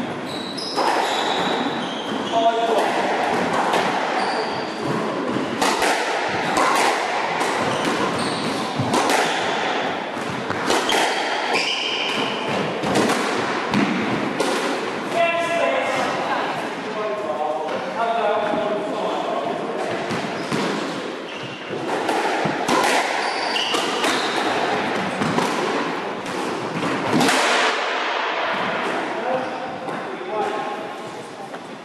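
Squash being played on a wooden court: repeated sharp knocks of the ball off rackets and walls, with short high squeaks of shoes on the floor.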